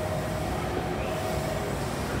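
JR Kyushu 885-series electric train moving slowly along the platform. Its running noise is a steady low rumble.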